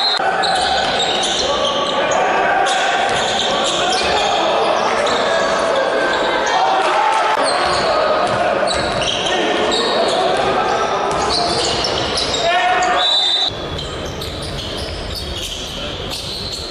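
Live sound of a basketball game in a large sports hall: the ball bouncing on the hardwood court and players and coaches calling out. About 13.5 s in the sound changes abruptly and gets quieter.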